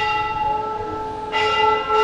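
Hanging temple bell rung in a Shiva shrine, its clang ringing on in long overlapping tones that slowly fade, struck again about a second and a half in.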